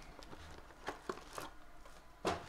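Trading-card pack wrappers crinkling and rustling as packs are handled and pulled from the box, with three short, sharp rustles in the second half.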